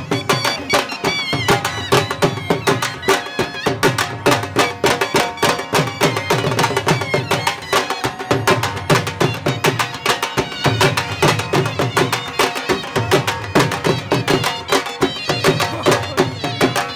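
Dhol drum beaten with a stick in a fast, steady folk dance rhythm, with a wavering melody played over it.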